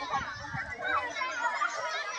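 Young children's voices chattering and calling out at once, many high voices overlapping.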